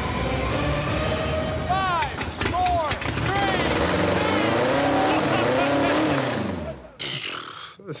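A Volkswagen Beetle engine fires up after fuel is poured straight into its carburettor and runs and revs, while the crew whoop and cheer over it.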